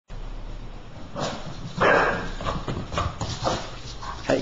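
Boston terrier's paws and claws clattering and scrabbling on a hardwood floor as it runs: a run of short strikes about half a second apart, with one louder, longer scrape near the middle.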